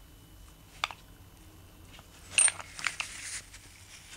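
Rubber-gloved fingers handling a wad of wet steel wire wool on paper towel: a sharp tick about a second in, then a short run of scratchy crackles past the middle.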